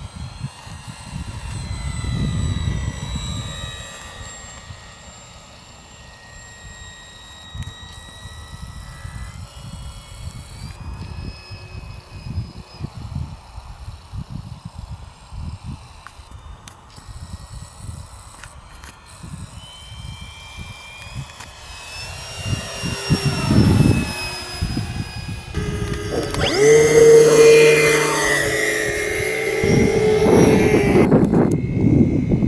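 Radio-controlled model T-28's electric motor and propeller whining in flight, the pitch rising and falling with the throttle. About three quarters of the way through it passes close, and the pitch drops as it goes by. Near the end the motor is much louder and close up.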